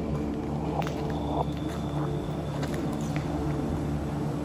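Footsteps on a gritty, debris-strewn pavement with a few sharp crunches and clicks, over a steady low hum.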